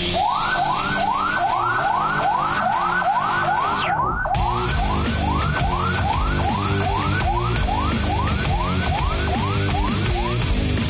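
Emergency-vehicle siren in a fast yelp, rising and repeating about three times a second, over background music. A high sweeping swish falls away about four seconds in.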